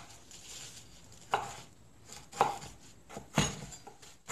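A kitchen knife chopping vegetables on a wooden cutting board: three sharp chops about a second apart, the last one the heaviest.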